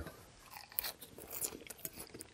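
Close-miked chewing of a mouthful of crisp lettuce salad: irregular soft crunches as the leaves break up.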